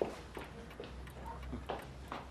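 A clock ticking with light, regular ticks.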